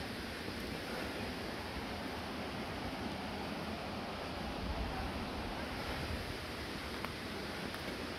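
Steady rushing of the Kamieńczyk stream and its waterfall in the rocky gorge, an even, unbroken roar of water.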